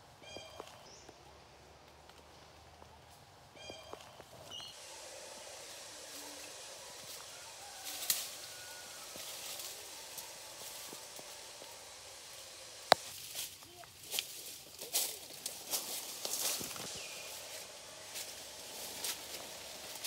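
Footsteps and rustling as someone pushes through dense, large-leaved undergrowth, with leaves and stems crackling and one sharp snap about two-thirds of the way through. Two short high calls sound near the start.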